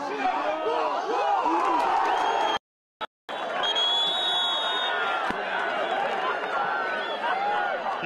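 Football stadium crowd with many voices shouting, broken by a sudden short silence at an edit about three seconds in. Just after it, a referee's whistle sounds for about a second.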